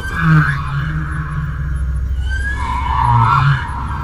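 Calls of the wake angels, the film's space creatures: a short gliding cry near the start, then a longer one that rises and holds from about halfway to near the end, over a steady low hum.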